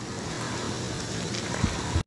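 Hot tub jets churning the water: a steady rushing noise, with two short knocks near the end.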